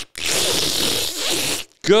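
A man making a loud, raspy sucking noise with his mouth close to the microphone for about a second and a half, mimicking a nursing baby. It cuts off, and speech begins just at the end.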